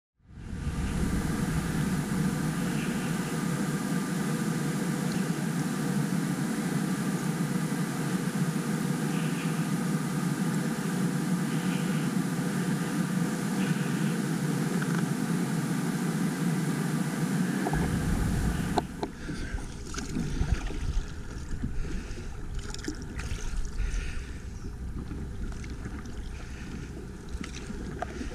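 Steady rushing noise of wind and water around a paddled kayak. About two-thirds of the way through it drops to quieter lapping water with scattered light splashes and knocks from paddling.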